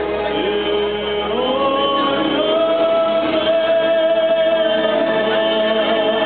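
A man singing into a microphone over musical accompaniment, amplified through the hall's speakers. About a second and a half in he slides up to a long, steady held note.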